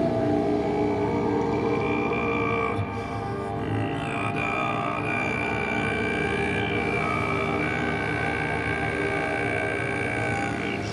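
Ambient drone music: a low sustained drone with long held higher notes that change pitch every few seconds, from a baritone saxophone over electronic ambient textures.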